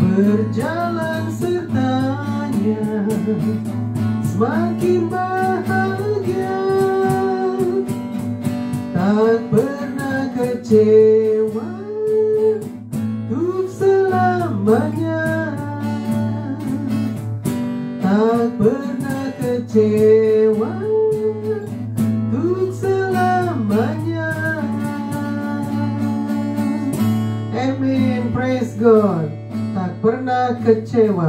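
A woman singing an Indonesian worship song while strumming an acoustic guitar in a steady rhythm.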